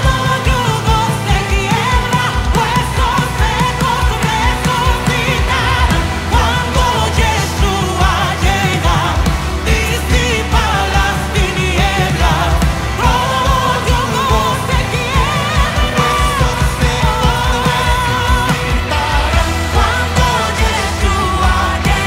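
Live worship band performing: women singing lead into microphones in Spanish over drums, bass, electric guitars and keyboard, with a steady beat.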